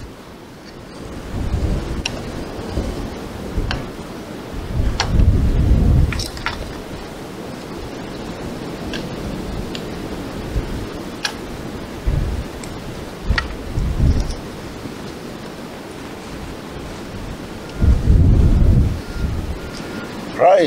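Wind buffeting the microphone in several low rumbling gusts over a steady rush of outdoor wind noise. A small kindling fire that has just been lit gives a few scattered sharp crackles.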